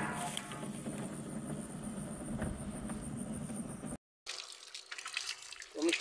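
Water running from an outdoor tap fed by a solar-powered borehole's storage tank, splashing over hands beneath it; it begins after a cut about four seconds in. Before that, an insect's high steady whine over outdoor ambience.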